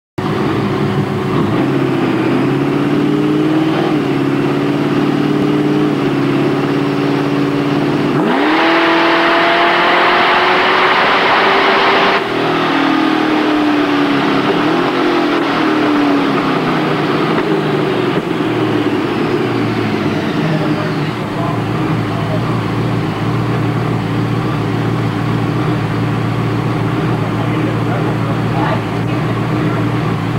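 Supercharged 408 stroker Ford V8 pulling on a chassis dyno: the engine note steps in pitch several times early on, then jumps suddenly to its loudest, harshest run for about four seconds. After the throttle closes its pitch falls away over several seconds and settles into a steady lower note.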